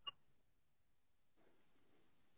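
Near silence: room tone, with one tiny click right at the start.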